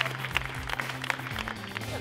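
Audience applauding, a dense patter of hand claps, over background music with held low notes.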